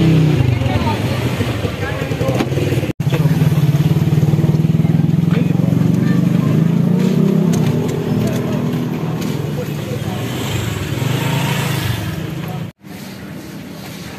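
A motor vehicle engine, likely a motorcycle, running close by in street traffic as a steady low drone that tails off near the end. The sound cuts out sharply twice, about three seconds in and again near the end.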